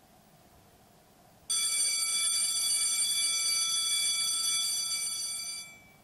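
A steady, high-pitched electronic buzzer tone sounds about a second and a half in and holds unbroken for about four seconds, fading a little before it stops.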